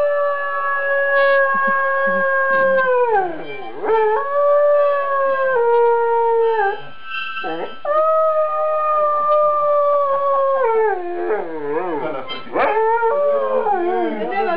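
Afghan hound howling in long, drawn-out howls, each held steady and then sliding down in pitch: three long howls, then shorter wavering ones near the end.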